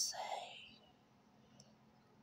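The breathy, whispered tail of a spoken phrase fades out in the first half second. Then there is near silence.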